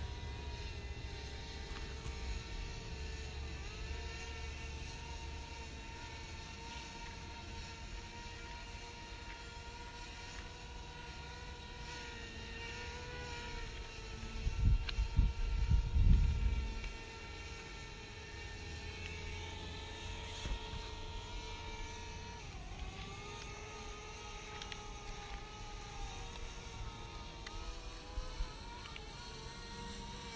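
Quadcopter drone's motors and propellers buzzing steadily in flight, the whine dropping and shifting in pitch about three-quarters of the way through. A low rumble, the loudest sound, lasts for about two seconds midway.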